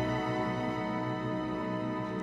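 Orchestral music, with bowed strings holding a sustained chord.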